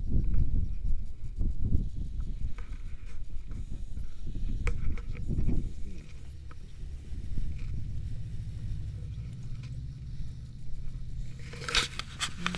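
Wind buffeting an action camera's microphone: an irregular low rumble that settles into a steadier, slightly quieter rumble about halfway through. Just before the end comes a short rustle as fabric brushes the camera.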